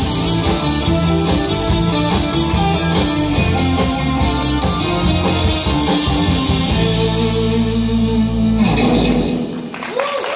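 Live rock band with electric guitar, bass, keyboard and drums playing the last bars of a song. It ends on a held final chord that rings on and stops about nine seconds in.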